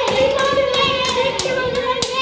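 A high, wavering sung tone held without a break, with sharp hand claps and slaps scattered through it.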